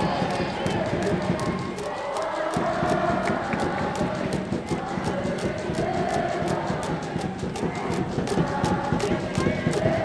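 A school cheering section in the stadium stands, chanting and playing music to a steady rhythmic beat, heard as a continuous background din.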